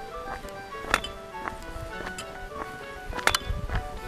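Background music, a melody of short notes, with two sharp knocks, about a second in and again near the end.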